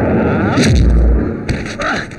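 Loud fight-scene impact sound effects: a heavy, booming crash about half a second in, then a sharp hit about a second and a half in, over dense noise.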